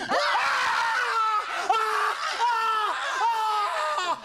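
A high-pitched human voice shrieking in a run of about six short, drawn-out cries, each falling in pitch at its end.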